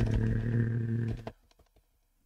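A man's drawn-out hesitation sound on one level pitch, a held 'so…' trailing into a hum, which stops about a second and a quarter in. After that come only a few faint keyboard clicks.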